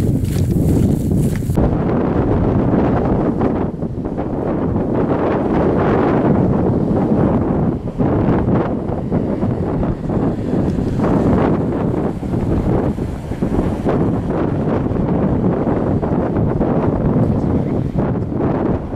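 Loud, uneven rushing of wind buffeting the microphone, with no clear tone or rhythm.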